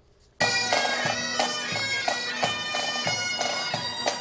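Pipe band of bagpipes and drums playing a march: the steady drones and chanter melody start suddenly about half a second in, with regular drum beats under them.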